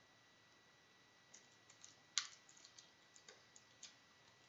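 Faint clicks and taps of fingers picking at a small cigar pack, trying to get it open; they start about a second in, and the sharpest click comes about halfway.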